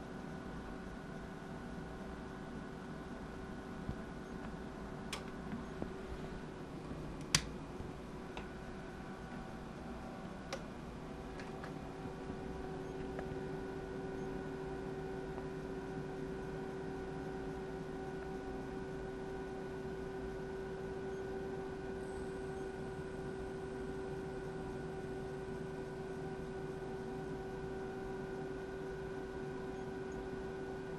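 Low steady hum with several faint whining tones from an amplifier dyno test bench while the amp is driven into its dummy load. The hum grows a little louder about twelve seconds in. A few sharp clicks come in the first ten seconds, the loudest about seven seconds in.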